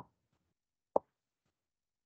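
A single short pop about a second in, with near silence around it.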